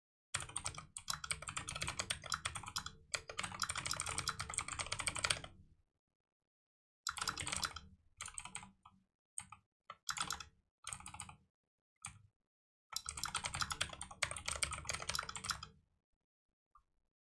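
Computer keyboard typing in fast runs. A long stretch of several seconds comes first, then a few short bursts, and another long run near the end.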